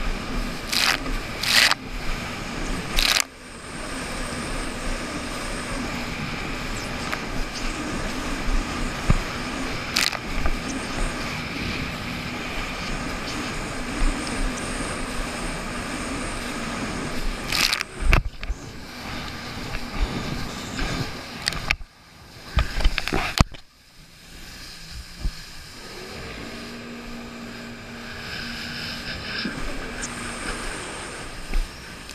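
Jet ski engine running under way: a steady drone with a high whine, broken several times by sharp bursts of splashing water. About three-quarters of the way through the sound cuts out briefly, then the engine comes back quieter and steadier.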